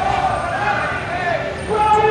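Slow-moving motorcycles and utility vehicles running in procession, with loud raised voices over the engines.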